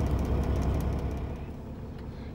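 Low steady rumble of a Kenworth T680 semi truck's diesel engine idling, heard from inside the cab; the rumble weakens near the end.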